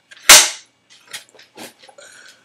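Film clapperboard snapping shut: one loud, sharp clack about a third of a second in, followed by a few faint ticks.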